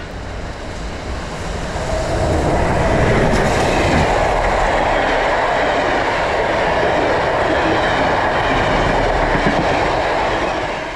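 A passenger train passing close by, its carriage wheels running on the rails. The noise builds over the first two seconds, then holds steady.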